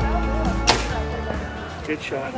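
Compound bow shot from full draw: one sharp snap of the released string about two-thirds of a second in, with a fainter click near the end, over background music that fades away.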